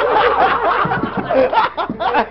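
A group of men laughing loudly together.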